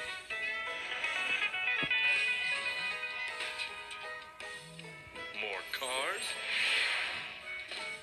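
Music from a children's cartoon video playing through a tablet's speaker, with a wavering, gliding sound about five and a half seconds in.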